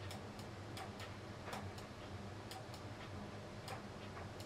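Computer mouse clicking lightly and irregularly, about a dozen clicks, while the clone stamp is dabbed over a photo, over a faint low electrical hum.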